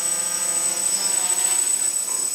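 Quadcopter's brushless motors and propellers buzzing steadily in flight on generic stock ESCs, several motor tones with a steady high whine above them. The tones shift slightly in pitch about halfway through.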